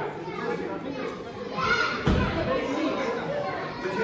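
Children's voices and chatter echoing in a large gym, with a short dull thud about two seconds in.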